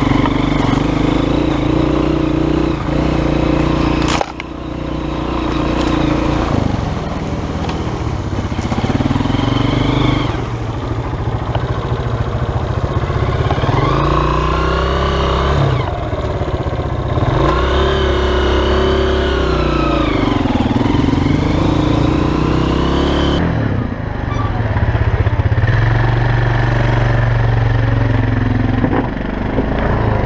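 Honda CRF230F's air-cooled single-cylinder four-stroke engine running on a trail, with a sharp knock about four seconds in. In the middle the revs rise and fall several times. After about twenty-three seconds a different, steadier quad-bike engine takes over.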